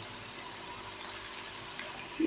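Sliced bitter gourds sizzling steadily in shallow oil in a karahi.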